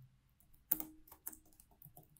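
Typing on a computer keyboard: a handful of separate keystrokes at an uneven pace, the first, about three-quarters of a second in, the loudest.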